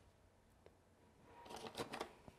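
Near silence, with one faint click about two-thirds of a second in, then faint rustling and light knocks of objects being handled near the end.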